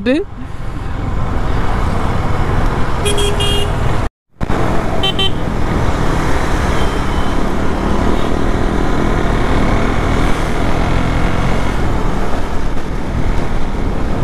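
KTM Duke motorcycle ridden at road speed: engine and wind noise run steadily. A short horn toot sounds about three seconds in, and the sound cuts out briefly just after four seconds.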